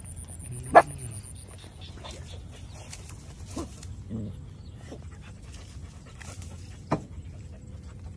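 A young local Cambodian dog barking in short single barks while nosing through grass: one bark about a second in and a sharper, shorter one near the end, with faint rustling between. The barks are his way of signalling that he has found something in the grass, such as droppings, an insect or a snake.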